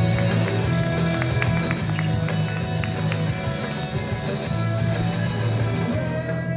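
Rock band playing live: electric guitars over sustained bass notes, with a drum kit and cymbals keeping time.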